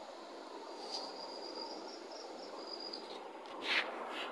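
Faint steady background hiss with a high, thin pulsing trill lasting about two seconds, then a short breathy sound near the end.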